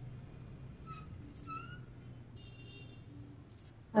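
Night-time crickets: a steady high insect trill with a few faint chirps over it, and a faint low hum underneath.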